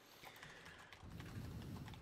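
Faint typing on a computer keyboard: a quick run of keystrokes.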